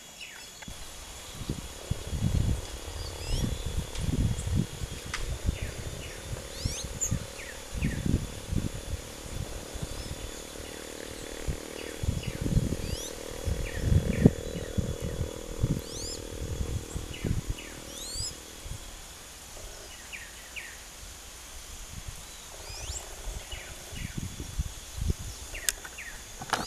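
Small birds chirping in scattered short, quick whistled notes over a faint steady high tone. Irregular low rumbles and bumps on the microphone run through the first two-thirds and are the loudest sound, then die down.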